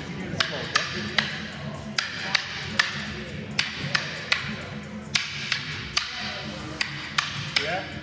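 Rattan Kali sticks clacking against each other in a partner drill: sharp strikes in sets of three, about a third of a second apart, with a new set roughly every second and a half, five sets in all.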